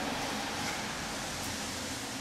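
Steady background noise with no distinct events: an even hiss without any clear source.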